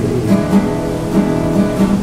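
Classical acoustic guitar played alone, strumming chords over plucked bass notes in a slow, even pattern.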